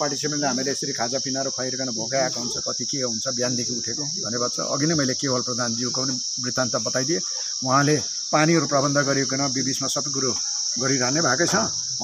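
A steady, unbroken high-pitched insect chorus droning beneath a man talking.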